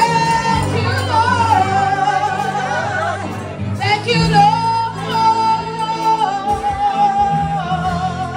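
Live gospel worship song: a woman sings long held notes through a microphone over steady instrumental accompaniment.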